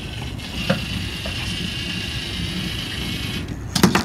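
LEGO Mindstorms EV3 robot's motors whining steadily as it drives. There is a small click under a second in, and the whine stops shortly before a sharp clack near the end.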